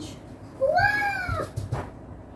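A single high-pitched cry that rises and falls over about half a second, followed by a few light knocks.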